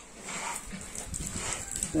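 Pigs in a pen: faint animal sounds and shuffling as a boar mounts a gilt.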